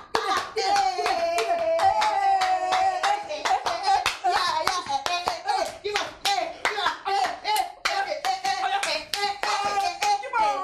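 People clapping their hands in a quick, steady rhythm of about three claps a second, with voices singing along.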